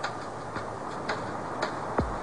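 Clock-like ticking, a sharp tick about every half second, over a steady hiss, ending on a deep thud.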